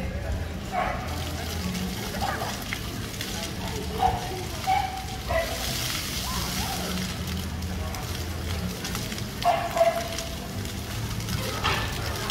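Ground-level splash-pad fountain jets spraying water, a hiss that swells for a couple of seconds around the middle, among short children's calls and voices, the loudest near the end; a low steady hum runs underneath.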